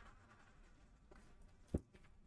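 Faint room tone, then a single short sharp tap near the end.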